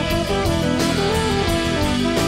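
Live rock band playing an instrumental passage between sung lines: electric guitars ringing over bass and drums.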